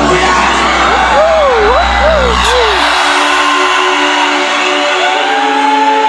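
Loud live concert music over a stadium PA with the crowd around the microphone: a heavy bass pulse stops about three seconds in, leaving held synth notes, with swooping whoops from the crowd between about one and two and a half seconds in.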